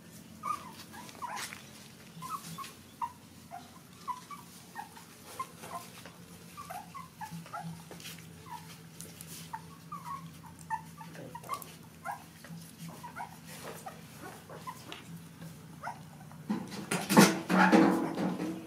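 Nursing puppies squeaking and whimpering in many short, high chirps, with a louder, rougher burst of noise near the end.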